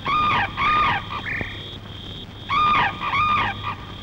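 Film soundtrack: four short pitched calls that rise and fall in pitch, coming in two pairs, over a faint, broken steady high tone.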